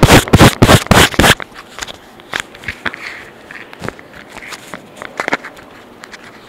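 Handling noise on a phone's microphone: loud crackling and scraping against the mic for about the first second and a half, then softer scattered clicks and rustles as the device is covered or put away.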